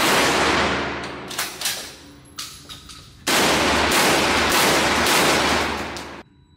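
Blackwater Sentry 12 12-gauge shotgun firing in an indoor range. One shot right at the start rings on in the hall's echo and fades over about two seconds, a few lighter knocks follow, and from about three seconds in there is more loud fire.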